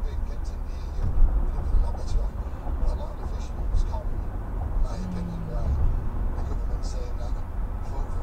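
Steady low road and engine rumble inside a moving car's cabin, picked up by a windshield dashcam, with faint talk, likely from the car radio, under it.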